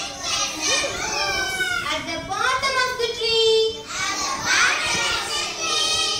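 Young children's voices speaking and chanting, high-pitched and continuous.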